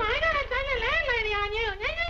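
Speech only: a voice talking fast and high-pitched without a break, over a low steady hum in the old soundtrack.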